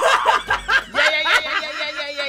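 Hosts laughing into their microphones, a woman's laugh the loudest, with other laughing voices over it.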